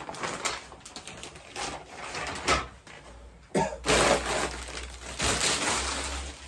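Clear plastic packaging crinkling and rustling as it is handled and pulled out of a cardboard box, busier and louder in the second half.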